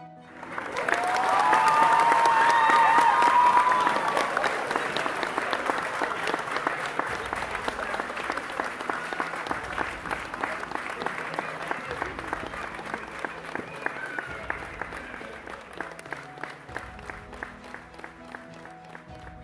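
Crowd clapping and cheering over background music. It swells in just after the start, is loudest in the first few seconds with voices shouting, then slowly fades.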